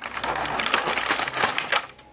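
Thin clear plastic packaging crackling and crinkling as a small toy forklift is pried out of its blister tray: a dense run of crackles that stops just before the end.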